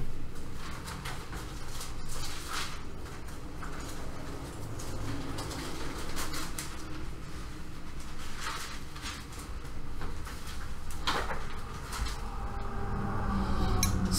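Bible pages being turned, several soft papery rustles a few seconds apart over a low steady room hum.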